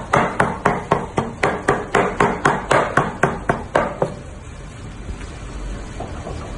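Heavy cleaver chopping raw meat on a wooden board, mincing it by hand: quick, even strokes about four a second that stop about four seconds in.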